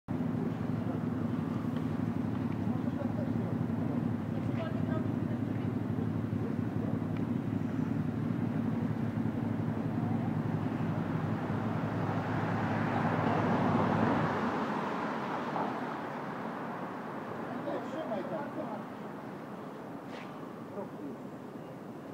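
Street traffic: a vehicle engine running with a steady low drone, then a louder swell of passing traffic about 13 seconds in. The drone stops about 14 seconds in, leaving quieter street noise.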